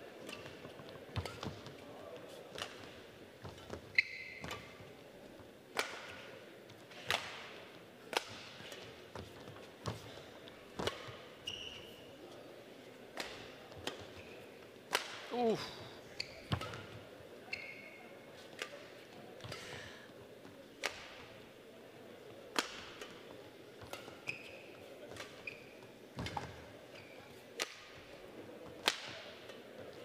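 A long badminton rally: rackets striking the shuttlecock about once a second, each a sharp crack, with short shoe squeaks on the court floor between the shots.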